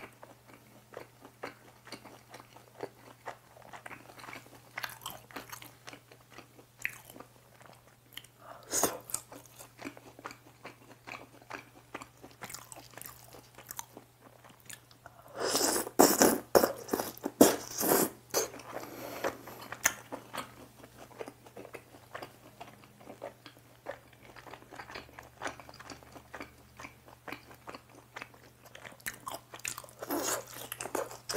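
Close-up chewing and mouth sounds, with a burst of loud crunching bites about halfway through as a piece of fried chapssal tangsuyuk (glutinous-rice-battered sweet and sour pork) is bitten into.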